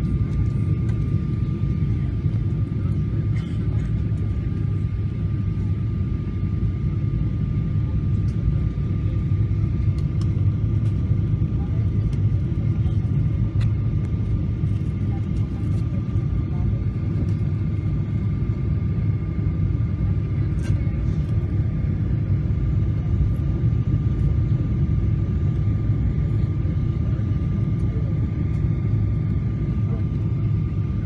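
Passenger jet cabin noise at low altitude on approach: a steady, loud low rumble of engines and airflow with a thin, steady high whine over it.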